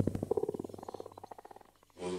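A fast buzzing flutter in the DJ mix, a rapid train of about eighteen pulses a second that fades away over about a second and a half, leaving a short gap.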